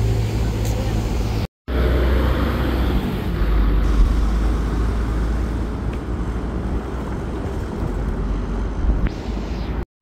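City street traffic: a steady low engine rumble and road noise from vehicles driving past, with two brief dropouts to silence.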